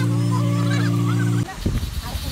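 A loud, steady, low droning tone, held without change, that cuts off suddenly about a second and a half in. Faint voices run underneath, and a few low thumps follow the cut-off.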